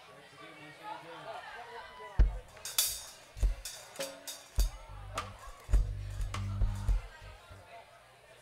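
Drum kit and electric bass playing on a stage: separate kick-drum hits and a cymbal crash begin about two seconds in, with low bass notes sounding under them in the second half.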